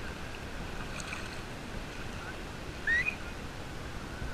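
Shallow sea water lapping and washing around a camera held at the water's surface, a steady wash. A short, high rising call sounds about three seconds in, over faint distant beach voices.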